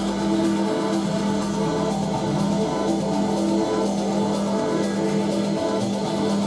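Live instrumental rock band playing, with electric guitar and bass holding long sustained notes over a drum kit.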